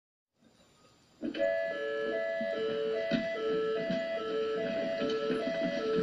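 Electronic two-tone alert signal starting about a second in, alternating between a high and a low note about every 0.4 seconds: a rescue station's turnout alarm sounding.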